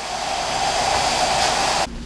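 Hair dryer blowing steadily while short hair is being styled, then cutting off abruptly shortly before the end.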